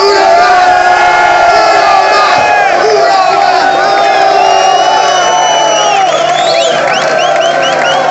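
Concert audience cheering and shouting, with a run of short rising high notes near the end.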